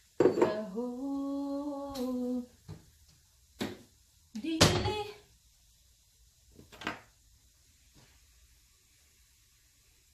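A woman's voice holding one sung note for about two seconds, followed by a few sharp kitchen clicks and a louder clatter of dishes or pans near the middle, then quiet room tone.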